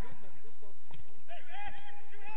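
Footballers' voices shouting and calling out across the pitch during open play, several voices overlapping, with two short thuds about one and one and a half seconds in.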